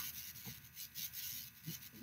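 Faint room noise with a few soft handling sounds in a pause between speech.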